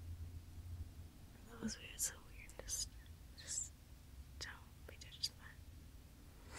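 A girl whispering close to the microphone: several short breathy phrases with sharp hissing sounds.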